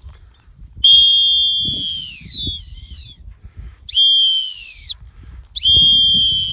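Dog-training whistle blown in three blasts: a long one about a second in, a shorter one near the middle, and a third starting near the end. Each is a steady high tone that sags in pitch as it ends, a recall signal to a pointing dog working the field.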